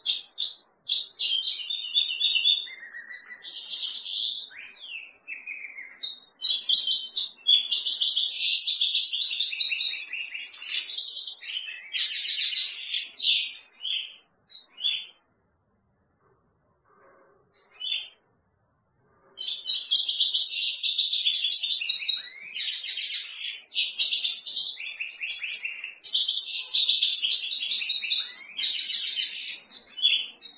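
European goldfinch singing: long runs of rapid, high twittering and trills, broken by a pause of a few seconds about halfway through.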